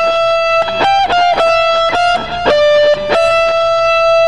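Electric guitar playing a slow single-note lead fill high on the second string, about half a dozen sustained notes stepping between neighbouring pitches, with a short step up and back down just after a second in.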